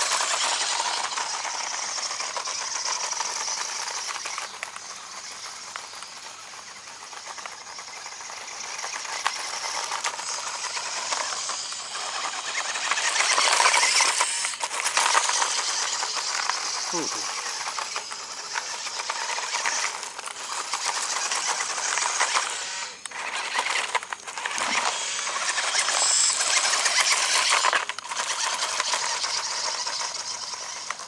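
Toy-grade RC off-road buggy driving over loose gravel: its small electric motor whirs and the tyres crunch and scatter stones. The sound swells and fades as it speeds up, slows and turns, with a few short breaks where it stops.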